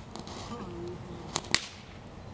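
Two sharp pops in quick succession about one and a half seconds in, the second louder, over a faint background hiss.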